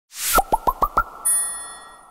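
Short electronic intro sound logo: a quick whoosh, then five fast bubbly pops each sliding up in pitch, then a bright ringing chime that slowly fades.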